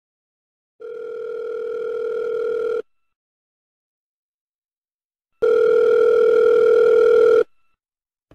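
Telephone ringback tone, as heard by a caller waiting for an answer: two steady rings of about two seconds each, separated by silence, the second louder.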